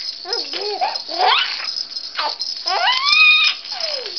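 A 16-week-old baby squealing with laughter: short pitch-bending squeals, a quick rising shriek, then one long high squeal about three seconds in that slides down at the end. A plush toy rattle is shaken throughout.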